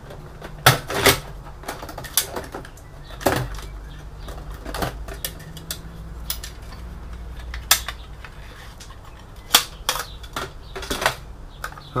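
Irregular plastic and metal clicks and knocks as a PC's metal drive cage is lifted out and a hard drive in a green plastic tool-less caddy is unclipped and pulled free. The sharpest knocks come about a second in and again late on.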